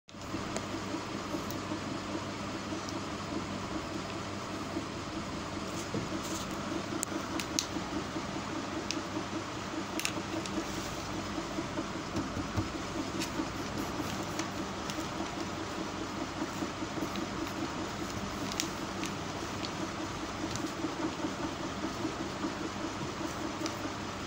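A steady mechanical hum, like an electric fan or room cooler running, with a few faint clicks scattered through it.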